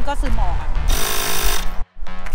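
Ryobi cordless tyre inflator running with a steady chattering hum while pumping up a tyre that slowly leaks. About a second in, a loud hiss lasts about half a second, then the sound cuts off suddenly.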